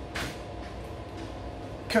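Quiet room tone with a faint steady hum, and one brief soft noise about a quarter of a second in. A man's voice comes in at the very end.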